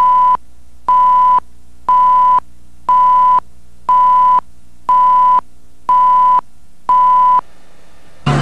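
Countdown leader beeps on a broadcast satellite feed: a steady single-pitched tone sounding once a second, each beep about half a second long, eight beeps in all, over a low hum. The beeps stop about half a second before the end.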